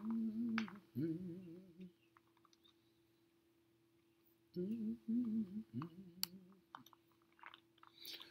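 A man humming a few short, level notes with his mouth closed: two brief phrases at the start and two more about halfway through. A faint steady tone runs underneath, with a couple of faint clicks.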